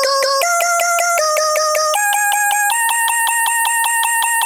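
Music: a lone high melody of held notes stepping mostly upward in pitch, pulsing rapidly, with no bass or drums under it.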